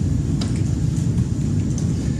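Steady low rumble of background room noise, with a faint click about half a second in.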